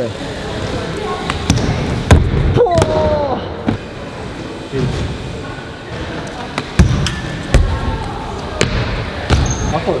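BMX bike riding a skatepark bowl: tyres rolling on the ramp with a series of sharp thuds and knocks from the bike, ringing in a large indoor hall.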